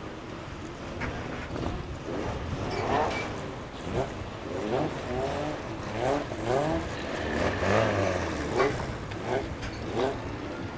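Several stock car engines revving, their pitch rising and falling in quick repeated blips as the cars move off, with a few sharp knocks in between.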